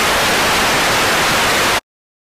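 Loud television static hiss, starting abruptly and cutting off suddenly just before the end.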